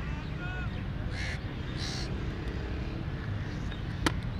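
Crows cawing: two short harsh calls about a second and two seconds in, over a steady low background rumble.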